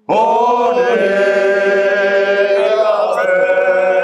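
Men's voices singing a religious chant a cappella, in long held notes with wavering ornaments, starting abruptly.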